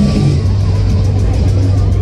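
Loud fairground music playing, with a steady low drone underneath and a regular high ticking beat.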